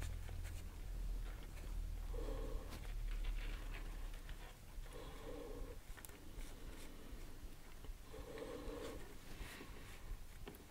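Paracord strands rubbing and sliding against each other and the fingers as a knot is worked and pulled through by hand: faint, scattered scratching and rustling.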